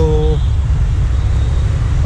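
Low, steady rumble of wind buffeting a handheld action camera's microphone.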